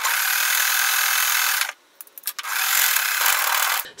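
Sewing machine stitching a seam through quilting cotton, in two runs of about two seconds each with a short stop and a few clicks in between.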